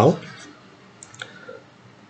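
A few light clicks about a second in, following the end of a spoken word.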